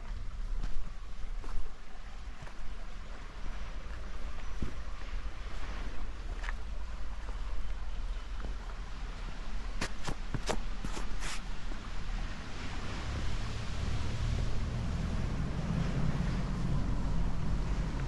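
Wind buffeting a handheld camera's microphone, a low rumbling noise that grows heavier in the second half. A quick run of five or so sharp clicks or knocks comes about ten seconds in.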